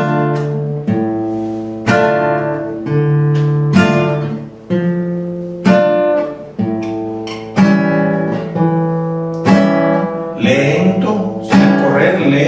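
Nylon-string classical guitar played slowly, one full chord strummed about once a second and left to ring, working through a minor-key chord progression.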